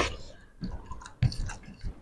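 Close-miked chewing and mouth sounds of people eating rice with egg fry and mashed potato by hand, in short irregular bursts.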